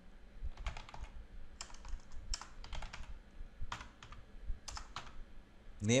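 Typing on a computer keyboard: irregular key clicks in short runs of a few keystrokes, with pauses between.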